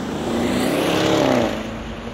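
Audi RS6 Avant's twin-turbo V8 as the car drives along the road toward the microphone. The engine note climbs in pitch and loudness, then falls away, loudest about a second in.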